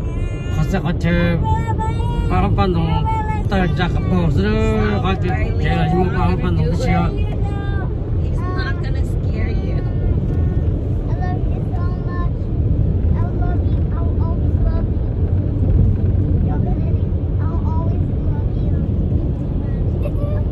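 Steady low rumble of a car's engine and tyres on the road, heard inside the moving cabin. Voices talk over it, mostly in the first half.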